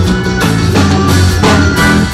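Live band music led by an accordion, played loud through the stage PA with a steady beat.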